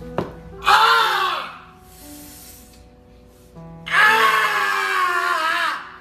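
A man wailing in pain: two drawn-out cries that fall in pitch, a short one about a second in and a longer one from about four seconds, over background music with long held notes.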